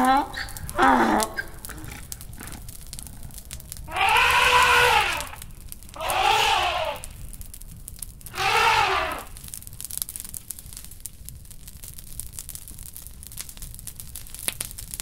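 Three drawn-out vocal calls, each about a second long and rising then falling in pitch, about two seconds apart, after a brief stretch of voice at the start.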